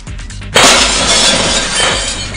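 Glass shattering with a sudden loud crash about half a second in, the noise of breaking glass trailing off over the next second or so. A steady low beat of background music runs underneath.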